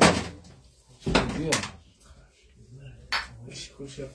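Glass cupping cups clinking and knocking as they are handled and set on the skin, with one sharp click about three seconds in, between short bursts of voice.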